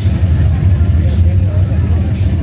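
A lowrider car rolling slowly past at close range, its engine and exhaust giving a steady low rumble. People talk faintly in the background.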